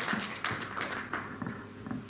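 A run of light taps and knocks, several a second at first, thinning out after about a second.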